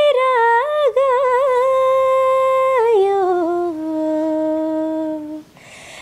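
A woman singing unaccompanied, with long held notes and small ornamental turns. The melody steps down to a lower, sustained note about three seconds in, and there is a brief pause for breath near the end.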